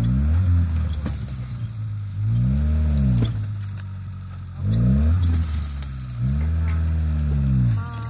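Suzuki Vitara 4x4's engine revving hard in about four bursts, each rising and then falling in pitch, with a lower steady running sound between them, as the vehicle struggles up a steep dirt hill.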